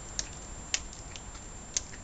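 Apple wine pouring from a gallon jug into a wine glass: a steady stream of liquid into the glass, with three short sharp clicks.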